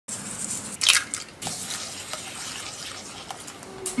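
Small handheld fine-mesh sieve being shaken and tapped over a glass bowl as powder sifts through: a soft scratchy hiss with a few light clicks, the loudest a brief rustle about a second in.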